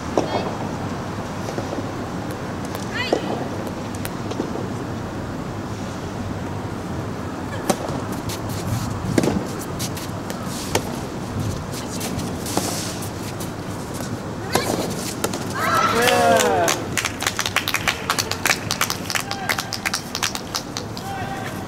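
Soft tennis rally: a few sharp racket-on-ball hits spaced one to two seconds apart, then a loud, high shout about sixteen seconds in as the point ends. A quick patter of clapping follows to the end.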